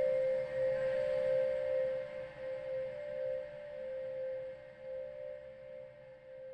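Closing bars of an electronica track: one sustained ringing tone with a slow wavering pulse, fading out gradually.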